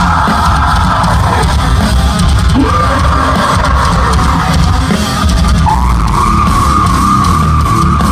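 A metalcore band playing live and loud: heavy guitars and drums with yelled vocals over them.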